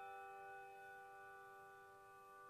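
A handbell choir's chord ringing on after being struck: several bell tones held together, fading slowly.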